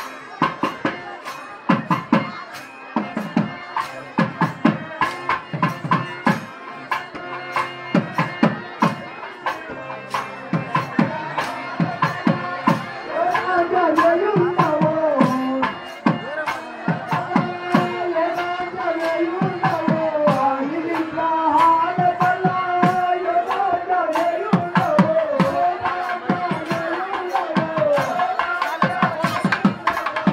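Drums beating a fast, steady rhythm, joined about halfway through by a man singing a wavering melody into a microphone over the drumming.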